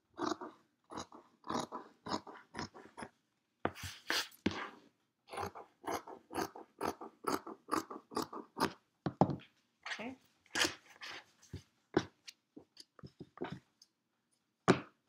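Scissors cutting through cotton fabric: a run of short crunchy snips, roughly two to three a second, with brief pauses between cuts.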